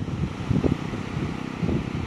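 Wind buffeting the microphone: an uneven low rumble that gusts up and down.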